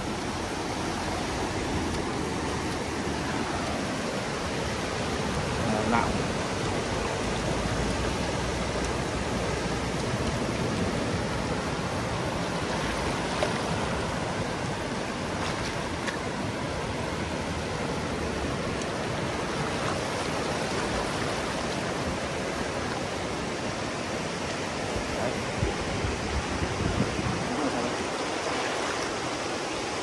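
Shallow sea surf washing over a sandy beach and water swirling around wading boots, a steady rushing, with a few small knocks and splashes, mostly near the end, as a hand clam rake works the wet sand.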